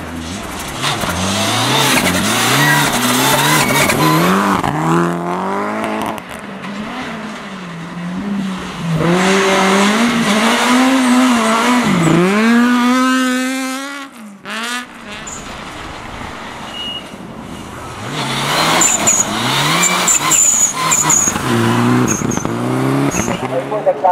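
Rally cars on a snow-covered stage passing one after another, three in turn, with engines revving hard, the pitch climbing and dropping through the gears. The second is a Honda rally car, and its pass cuts off abruptly about two thirds of the way through.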